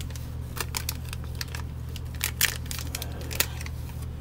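Soft plastic wrapper of a pack of wet wipes crinkling and clicking as it is handled and turned over, in scattered short crackles over a steady low hum.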